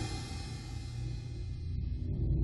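Hard rock recording in a sudden lull after a loud full-band passage cuts off: a cymbal rings out and fades away over a low held note.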